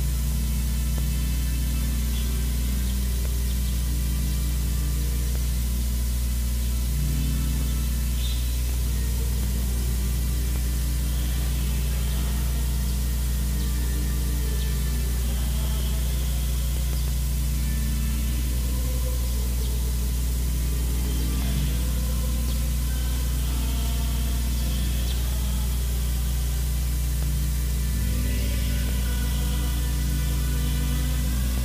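Quiet instrumental music of sustained notes that change every few seconds, over a steady low hum and hiss.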